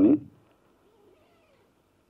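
A man's amplified speech breaks off about a quarter second in. A pause of near silence follows, with only a faint, barely audible sound in the middle.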